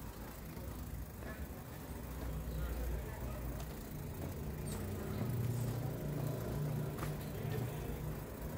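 Street traffic: a motor vehicle's engine running on the street, its low rumble growing louder about halfway through and staying up for a couple of seconds.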